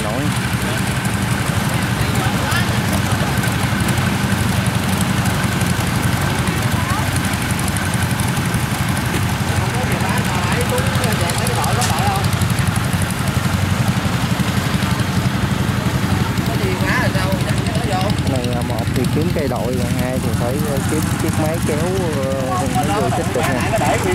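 Diesel engine of a tracked rice-field machine running steadily with a low drone, with people's voices calling over it in the later part.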